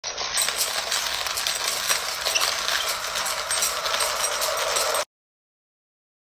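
Dense rattling with many quick clicks and clinks from a small object shaken in the hands. It cuts off suddenly about five seconds in.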